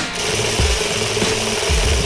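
A steady, dense rattling battle sound effect, starting just after the firing order and held without a break, laid over background music with a low beat.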